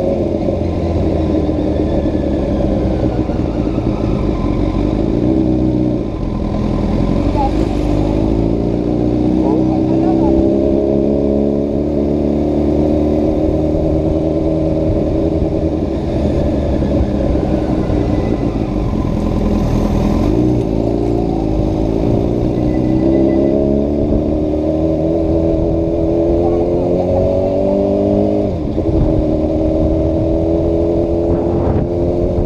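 Honda CBR1000RR Fireblade's inline-four engine pulling the bike along, its pitch climbing and falling with the throttle, with a sharp drop about six seconds in and again near the end. Wind rush underneath.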